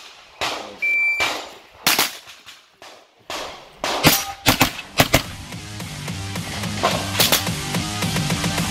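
A shot timer's start beep, one steady tone about a second in, then a string of shots from a blowback 9mm pistol-calibre carbine, several fired in quick pairs. Music fades in under the shots from about halfway and grows louder.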